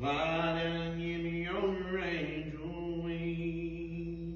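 A voice singing slow, long-held notes with a slow pitch change about halfway through.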